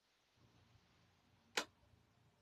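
Near silence, with one short, sharp noise about one and a half seconds in.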